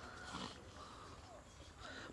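A hunting dog, wounded by wild boar, whining faintly in a few short, soft whimpers.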